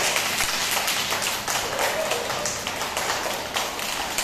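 A group of young children clapping their hands, many uneven claps overlapping in a steady spatter.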